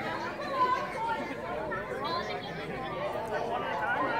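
A group of people talking at once: overlapping chatter from several voices.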